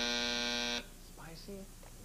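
Game-show buzzer: one flat, buzzy tone lasting just under a second, then cutting off. It marks a wrong guess.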